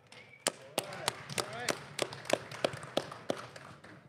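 Applause: sharp hand claps about three a second, with cheering and whoops from a crowd in another room.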